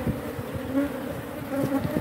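Honeybee colony buzzing over an opened hive and a lifted brood frame: a steady hum, with a few faint taps.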